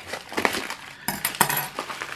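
Padded plastic mailer crinkling and rustling under handling as it is opened, with small clicks and a louder burst of rustling about halfway through.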